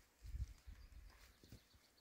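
Faint footsteps on a rocky mountain trail: a few soft low thumps in the first second, then light clicks.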